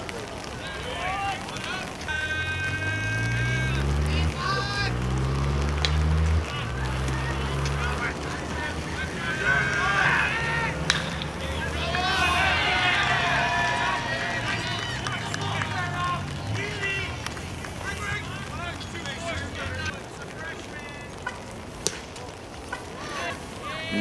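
Several voices shouting and calling out at once during a play on a baseball field, loudest about ten to fourteen seconds in, over a low droning hum whose pitch shifts during the first several seconds.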